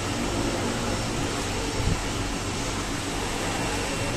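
Steady mechanical hum and hiss of ventilation, level throughout, with one soft low thump about two seconds in.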